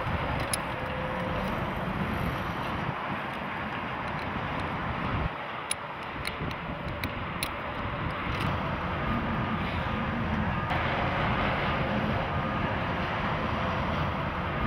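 Steady outdoor rumble of passing highway traffic, with a few light clicks in the middle.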